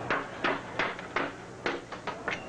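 Disco vinyl records being smashed and broken by hand: a series of about six sharp cracks and clatters.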